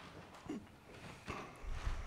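Handling noise from a handheld microphone as it is passed back: a few soft knocks, then a low rumble near the end.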